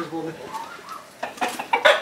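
Chickens clucking, a few short calls in quick succession in the second half.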